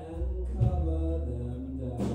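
Live rock band playing, with held notes from electric guitars and vocals over a steady bass line and a drum hit about half a second in. Recorded on a phone microphone in the audience.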